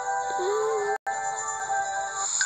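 Gentle background music of held, synthesized notes, dropping out for an instant about halfway through.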